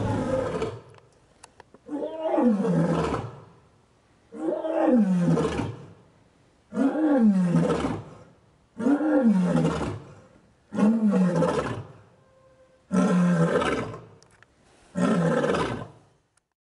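A lioness roaring: a bout of about seven calls, one roughly every two seconds, each dropping in pitch.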